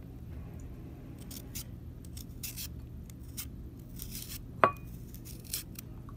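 Carrot being shaved into ribbons over a ceramic bowl: a series of short, high scraping strokes, with one sharp ringing clink against the bowl a little past the middle.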